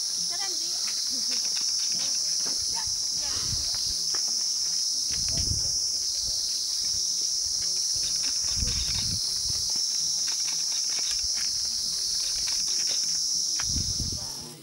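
A steady, high-pitched insect chorus from the roadside vegetation, buzzing unbroken throughout.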